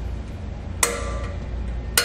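Brake adjuster gear of a self-adjusting electric trailer drum brake being turned with a flathead screwdriver through the backing-plate slot: two sharp clicks about a second apart, each followed by a brief metallic ring, as the brake shoes are set.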